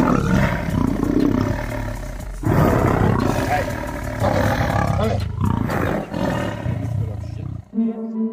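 A lion and a tiger fighting, growling and roaring in three long stretches.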